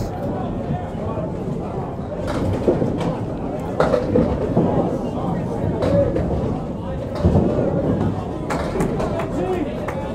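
Candlepin bowling alley din: steady background chatter of bowlers with several sharp clatters of balls and pins spread through it.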